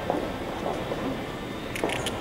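Low murmur of people standing around, and near the end a short sharp scrape as a cardboard ballot box is cut open with a box cutter.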